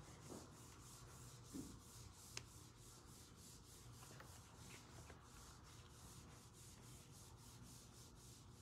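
Whiteboard eraser wiping across a whiteboard in quick, faint back-and-forth strokes, about four a second, with a small click about two and a half seconds in.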